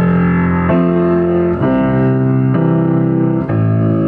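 Piano played in hymn style, with left-hand octaves under full chords in the right hand. A new chord is struck about once a second and held.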